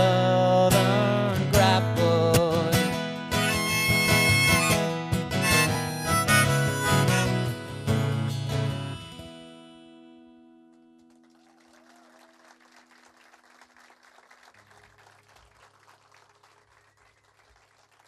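Harmonica and strummed acoustic guitar playing a song's closing instrumental. The music stops about nine seconds in, the last chord ringing out and fading over the next couple of seconds, leaving only faint noise.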